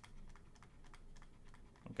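Faint, light ticks and scratches of a stylus writing on a tablet.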